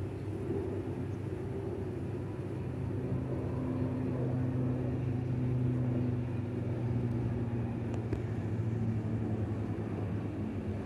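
ATR twin-turboprop airliner climbing out: a steady low propeller drone with a held hum, growing a little louder about midway.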